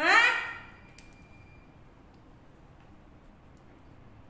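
A woman's short, rising questioning 'hah?' right at the start, then quiet room tone for the rest.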